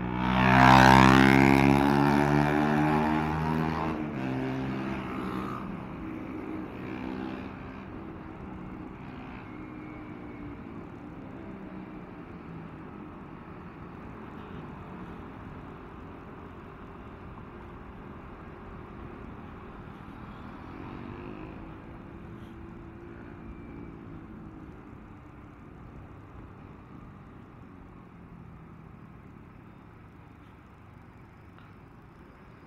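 Motorcycle engine and road noise while riding in city traffic. About a second in, a loud engine rise peaks and fades over the next few seconds, then a steady, quieter engine drone with a slight swell near the middle.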